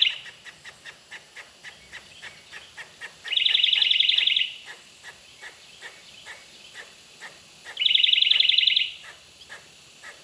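A loud, fast trilling call, heard twice, each about a second long, with quick regular chirps about four a second in between.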